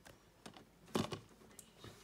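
Light clicks and taps from fingers handling a plastic Blu-ray case: a handful of short, sharp ticks, the loudest about halfway through.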